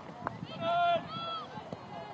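Two high-pitched shouts of celebration at a goal, from a woman or women on the pitch: a long loud call about half a second in, then a shorter one that rises and falls.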